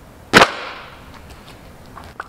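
A long, old clear plastic car floor mat slapping down flat onto an asphalt driveway: one sharp smack about a third of a second in, with a short fading rattle after it.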